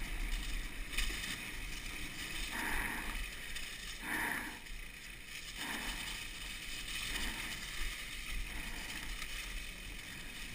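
Mountain bike rolling down a leaf-covered dirt trail, its tyres running over dry leaves in a steady noisy rush, heard from a camera on the handlebars, with a sharp knock about a second in.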